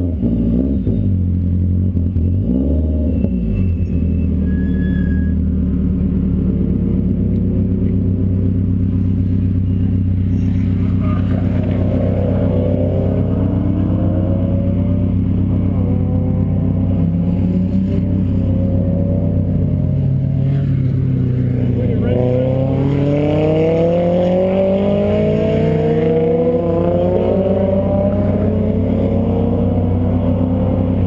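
Subaru WRX's turbocharged flat-four idling steadily close by. Another car's engine rises and falls in pitch as it accelerates from about ten seconds in, and again from about twenty seconds in.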